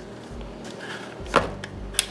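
Handling noise from a plastic clip-on mini fan being turned over in the hands: a faint rustle, then one sharp plastic click about a second and a half in.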